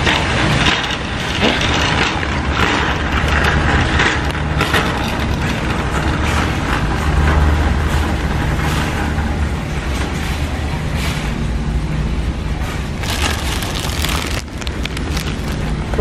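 Metal shopping cart rolling and rattling over a concrete warehouse floor, with many small clatters over a steady low hum of store background noise.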